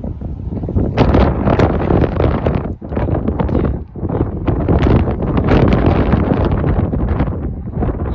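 Loud wind buffeting the microphone, with the muffled footfalls of a horse cantering on arena sand underneath.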